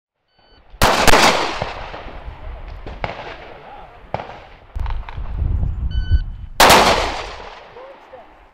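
Handgun shots fired on an outdoor range, each with a long echoing tail. Two loud shots come close together about a second in, fainter ones follow around three and four seconds, and a final loud shot comes near the end. A low rumble runs between the later shots.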